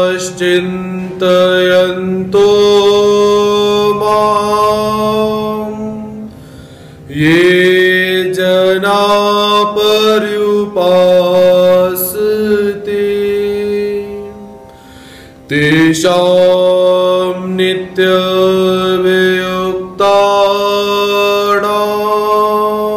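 A man's voice chanting a Sanskrit devotional invocation in long held melodic notes, in three phrases separated by short pauses, over a steady low drone.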